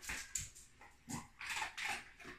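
A dog whimpering in several short bursts, begging for the treat held just above it.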